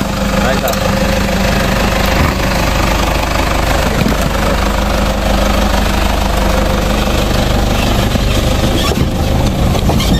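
Toyota Hilux pickup's engine running steadily close by as the truck crawls slowly over broken, rubble-covered road.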